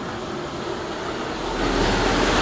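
Steady outdoor rushing noise with no distinct events, growing louder about a second and a half in.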